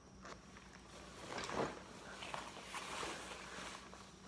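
Rustling of a nylon rain jacket and a backpack as the backpack is handled and slung onto the shoulders, in soft uneven swells with the loudest about one and a half seconds in.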